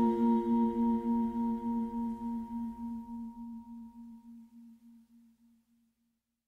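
The last chord of a slow pop ballad held and dying away, its low note pulsing about four times a second, fading out to silence a little after five seconds in.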